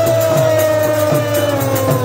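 Live Hindi kirtan music: a long held note that slowly falls in pitch, over a steady harmonium drone, the khol drum's regular strokes and small hand cymbals keeping time.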